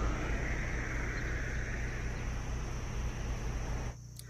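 Outdoor roadside noise: a steady low rumble and hiss, with a brighter rushing sound that fades away over the first two seconds.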